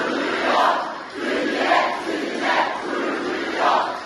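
Large crowd of students chanting in unison, rising to a loud shout about once a second, four times.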